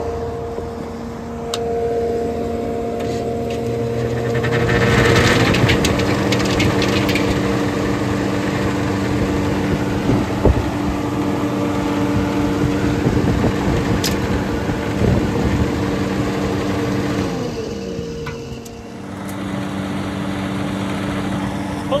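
Belt-driven restaurant exhaust hood fan with a new 110-volt motor starting up: a hum rises in pitch as it spins up about four seconds in, then runs steadily. Near the end it winds down briefly and comes back up. It is drawing about nine amps, more than the motor's 7.2-amp rating: the fan is set to spin too fast and overloads the motor.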